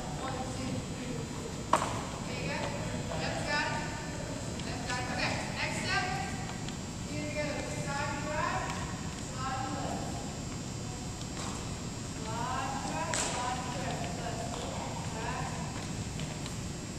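Sneakers squeaking and scuffing on a hardwood gym floor during a line dance: short chirps over and over, many of them rising, with footsteps and a sharp knock about two seconds in. The gym is echoey and voices are heard.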